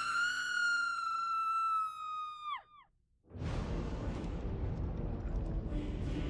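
A long, high-pitched scream held on one pitch for about two and a half seconds, dropping away at the end. After a brief silence, a dense, low-heavy wash of film score and ambience comes in.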